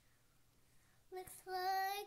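A young girl singing: after a second of near quiet she starts a phrase and holds one long, slightly wavering note to the end.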